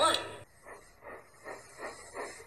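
Steam locomotive chuffing at a steady pace, soft evenly spaced puffs about two to three a second.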